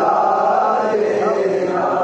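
Men chanting a noha, a Shia mourning lament, in long held, drawn-out notes.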